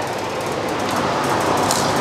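Steady shop background noise, an even mechanical hum and hiss with no clear beat or pitch, with a faint brief rustle near the end.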